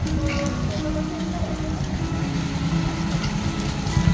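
Background music: a melody of held notes that step from one pitch to the next, over a steady noisy outdoor haze.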